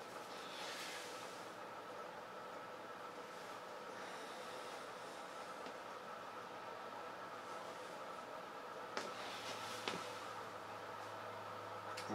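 Electrically driven 1.5 kg rotor spinning up under speed control: a faint, steady hum with a few high tones over a soft hiss. Two light clicks come about nine and ten seconds in.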